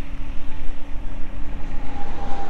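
Wind buffeting the microphone: a low, irregular rumble that swells and dips.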